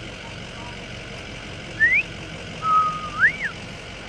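A two-part wolf whistle: a short rising whistle, then a held note that swoops up and falls back down.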